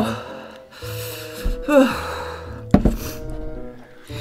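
Soft background music with steady held notes, a brief vocal sound a little before the middle, and a single sharp click shortly after it.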